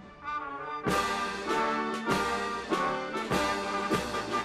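A brass band plays a national anthem in slow, held chords. It starts softly and comes in at full strength about a second in.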